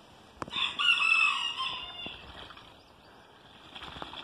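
A rooster crowing once, a single pitched call of about a second and a half, just after a short click.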